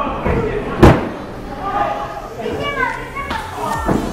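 A wrestler's body slamming onto the boards of a wrestling ring under its mat: one loud slam about a second in and a lighter thud near the end, with voices calling out between them.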